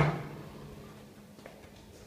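A single sharp knock at the very start, then a faint steady low hum with one small tick partway through.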